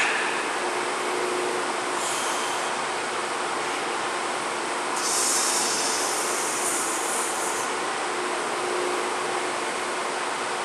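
Steady rushing room noise, with a brief higher hiss about two seconds in and a longer, louder one from about five to seven and a half seconds.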